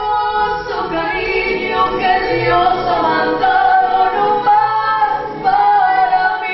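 A woman singing a ranchera song in full voice, holding long sustained notes that slide from one pitch to the next.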